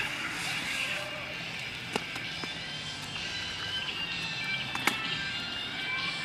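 Small kick scooter's hard wheels rolling on a concrete path, with a few sharp clicks, the loudest near the end, over background music.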